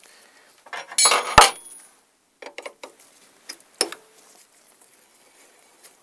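Metal tools clinking against the bolts of a motorcycle's rear brake caliper as its retaining bolts are undone with a socket on an extension bar: a quick run of clinks about a second in ending in a sharp knock, then a few lighter scattered clicks.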